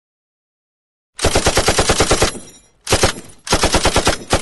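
Machine-gun fire sound effect: rapid shots at about twelve a second, in three bursts, the first about a second long and the second brief, starting about a second in.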